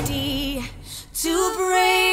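A woman singing in a soft lofi song: a short sung note, a brief break about three-quarters of a second in, then a long held note.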